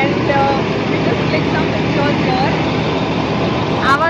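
Background voices of other people talking over a steady low hum of idling vehicle engines.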